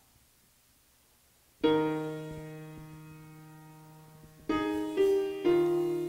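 Piano chords opening a hymn's introduction: after a brief near-silence, a chord is struck about a second and a half in and left to ring and fade, then three more chords follow in quick succession near the end.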